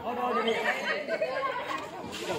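Several voices talking over one another: crowd chatter among players and onlookers at an outdoor game.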